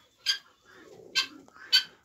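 Mandarin ducks giving three short, high-pitched calls, a little under a second apart.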